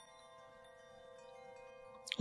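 Faint, sustained chime-like chord of several steady ringing tones, swelling slightly toward the end: a slide-transition sound effect.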